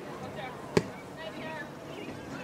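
A single sharp thump of a soccer ball being kicked, about a second in, over faint distant voices calling on the field.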